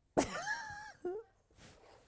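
A person's high-pitched, wordless vocal cry, held for about a second with a curving pitch, then a brief second cry.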